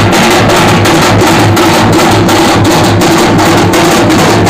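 A group of large steel-shelled drums beaten with sticks and hands, playing together in a loud, fast, steady beat.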